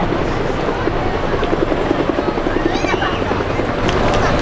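Military helicopter rotors beating in flight, a rapid rhythmic thudding over a steady engine and rotor rush.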